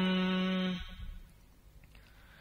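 A chanting voice holds the last syllable of a recited verse line on one steady note, which fades out about a second in, leaving near silence.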